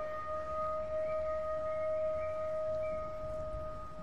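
A steady, held musical tone with a fainter overtone above it, sustained for several seconds and slowly dying away near the end.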